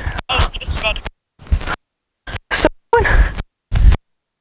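Wind rumbling on a wireless lavalier microphone, with broken fragments of a voice. The sound keeps cutting off to dead silence and coming back, the wireless signal dropping out near the limit of its range.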